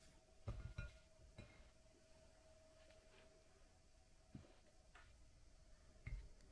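Near silence: room tone with a faint steady hum and a few soft low knocks, a cluster in the first second and a half and another near the end.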